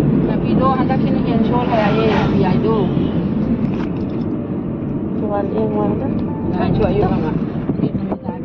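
Steady low rumble of road and engine noise inside a moving car's cabin, with voices talking in short stretches over it.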